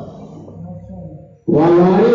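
A man's voice chanting in a melodic, sung style of religious recitation: one phrase trails off and fades, then a loud new held phrase begins abruptly about one and a half seconds in.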